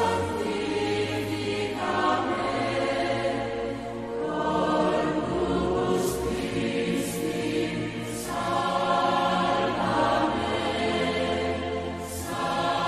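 Choir singing a slow hymn over held low bass notes, the chords changing about every two seconds.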